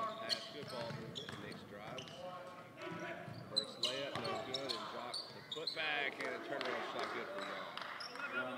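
Basketball bouncing on a hardwood gym floor during live play, with scattered sharp knocks, and players' and spectators' voices calling out in the large hall.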